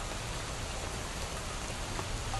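Dense, steady splashing hiss of many small fountain jets falling back onto earthenware jar lids and pooled water, sounding much like rain.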